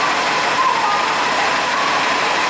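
Transit bus idling close by, a steady rushing engine noise.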